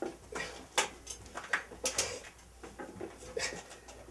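A man breathing hard in short, irregular gasps and pants, a few of them sharp and loud.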